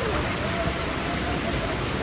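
Steady rush of water pouring down a fibreglass water slide's runout channel, with a faint held voice in the distance through the middle.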